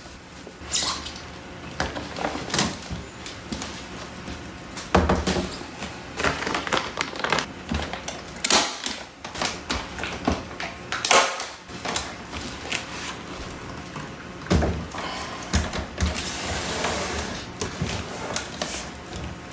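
Hands working a moss-filled panel of plastic netting on a plastic-wrapped wooden frame: irregular knocks and clicks as the frame is handled, with rustling of plastic sheeting and moss near the end.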